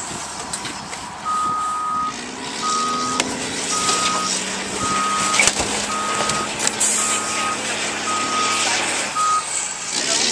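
Reversing alarm of a heavy dump machine backing up: eight steady, single-pitch beeps about one a second, starting about a second in and stopping near the end, over the machine's diesel engine running. A few clattering knocks of trash being tossed onto the pile.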